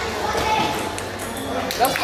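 Table tennis balls clicking sharply off bats and tables, several hits spread through the moment, under steady chatter of children and adults.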